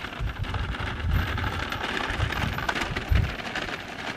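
Metal shopping cart rattling and jangling steadily as it is dragged on a rope over hard, dry dirt.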